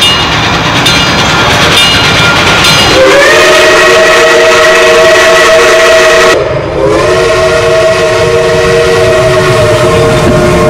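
Steam locomotive 425's chime whistle blowing two long blasts. The first starts about three seconds in; after a short break the second starts and holds on. Before the whistle the steady noise of the approaching train is heard.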